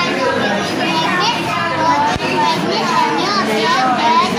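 Babble of many children's voices talking and calling over one another, with no single voice standing out.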